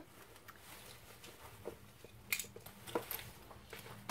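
Faint handling sounds of small objects being picked up and set down: light rustling with scattered soft clicks and knocks, the sharpest a little past two seconds in and again at about three seconds.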